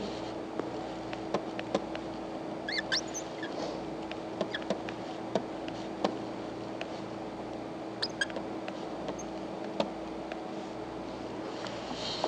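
Light scattered clicks and taps of a pen stylus on a drawing screen as a circuit diagram is sketched, with a couple of brief high squeaks about three and eight seconds in, over a steady electrical hum.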